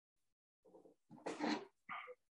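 Three short animal calls over a video-call line: a brief one, a longer and louder one, then a short sharp one at the end.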